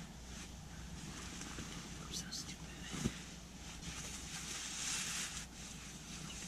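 Clothing rustling as camouflage hunting pants are tugged on, with nylon tent and sleeping-bag fabric shifting, and a single thump about three seconds in.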